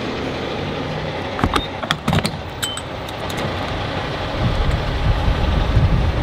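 Steady vehicle engine and traffic noise around a gas station forecourt, with a few light clicks about one and a half to two and a half seconds in.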